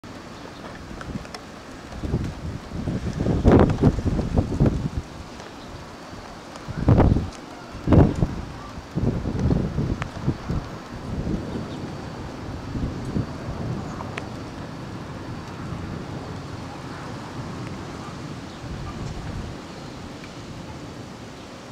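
Gusty storm wind buffeting the camera microphone, with a run of strong gusts a few seconds in and two sharp ones around seven and eight seconds, then settling to a lower, steadier blow.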